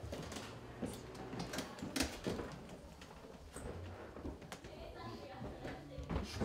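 Faint, low voices with a few short knocks and rustles, the clearest about two seconds in.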